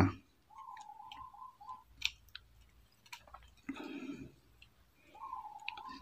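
Faint, scattered light clicks of a stripped copper wire end against the plastic body and terminal of a double light switch as the wire is worked into its push-in terminal, with a brief rustle of handling about two thirds of the way in.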